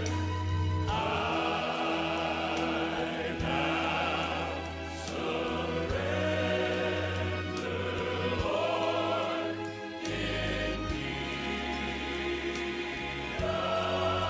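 Choral gospel music playing: voices singing long held notes with vibrato over a sustained bass, the chord changing every second or two.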